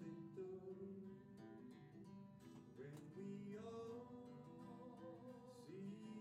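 Acoustic guitar strummed, playing a steady hymn accompaniment with chord changes.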